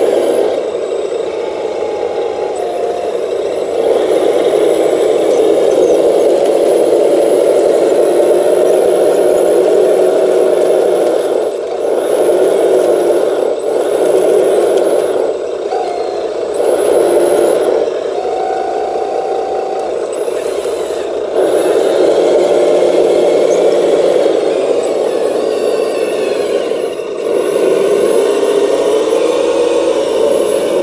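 Radio-controlled CAT 953C track loader model running: a steady mechanical noise from its motors and drivetrain that grows louder and eases off several times as it drives and works its bucket, with a few brief short whines now and then.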